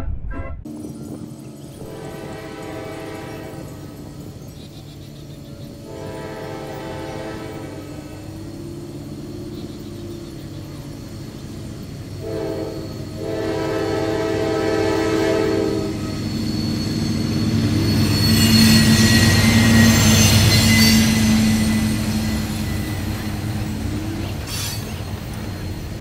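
Small-gauge park train's horn sounding several long, held blasts, followed by the train running past, its noise swelling and then fading near the end.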